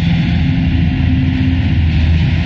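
Dark ambient / power-noise music: a loud, steady wall of hissing noise over a low droning hum with held tones beneath it.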